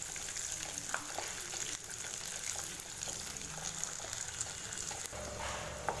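Garlic cloves and cumin seeds frying in hot oil in a kadai: a steady sizzle with small crackles, and a few light clicks as a wooden spatula stirs them.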